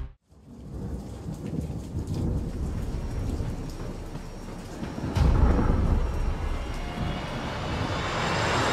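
Heavy rain with a low rumble of thunder that swells about five seconds in.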